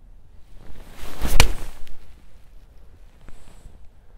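Golf swing with an 8 iron: a short whoosh of the club coming down, then one sharp crack as the clubface strikes the ball, about a second and a half in.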